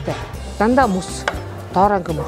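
Knife chopping food: a few sharp knocks about a second in, over background music with a voice.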